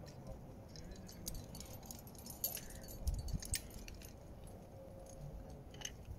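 Metal climbing gear, carabiners and quickdraws, clinking and jingling in a few scattered light jingles, with a brief low rumble about three seconds in.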